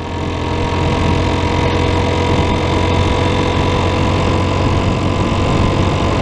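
Motorcycle engine running steadily at cruising speed, under a constant rush of wind and road noise from riding on the open highway.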